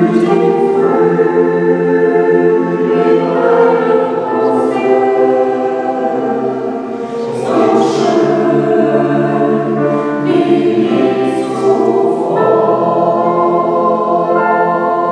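Mixed choir of men and women singing a sacred piece in parts, held chords in long phrases, coming in right at the start and breathing briefly between phrases.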